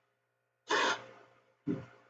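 Two sharp breaths into a close microphone, about a second apart, each fading quickly, over a faint steady hum.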